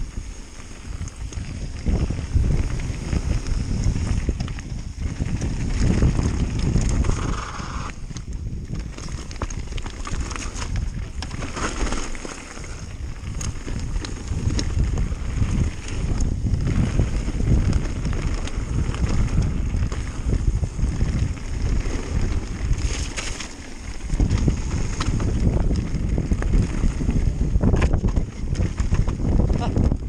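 Wind buffeting the microphone over the crunch and rattle of a mountain bike riding fast down a loose gravel trail, with frequent clicks and knocks from stones and the bike.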